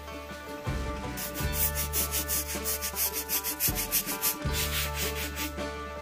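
Wooden post being scrubbed by hand to work in a cleaner and lift grey staining, in quick, even back-and-forth strokes from about a second in until shortly before the end.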